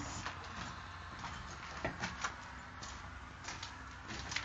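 Footsteps on rough ground and handheld camera handling noise: a few scattered short scuffs and knocks over a faint low hum.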